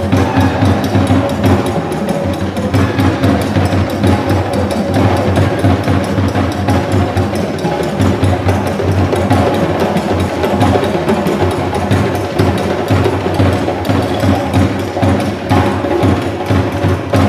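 Several djembe hand drums played together in a fast, steady rhythm of dense strokes, without a break.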